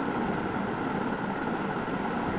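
Steady, even background noise with a faint hum and no distinct events.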